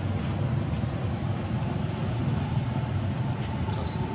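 Steady low outdoor background rumble, with no distinct calls standing out.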